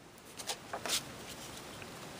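Quiet rustling and sliding of cardstock and a plastic ruler being repositioned on a cutting mat, with a few faint light taps around the middle.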